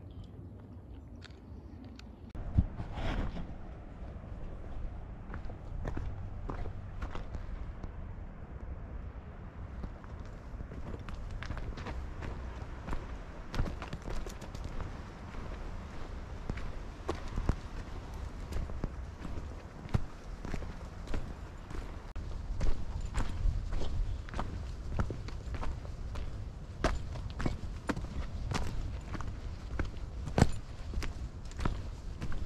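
Footsteps of a hiker walking on a rocky dirt trail covered in dry leaves and twigs, an irregular run of crunches and scuffs that starts about two and a half seconds in.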